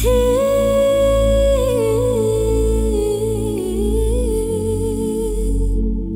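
Pop song in which a female voice sings one long wordless phrase, holding a high note and then stepping down in pitch, over a deep sustained bass.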